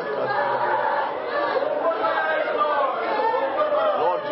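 Continuous speech: voices talking, overlapping one another, in a large room.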